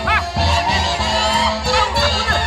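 Live Santiago festival music from the central Peruvian Andes, with a steady beat and a high, honking tone that rises and falls near the start.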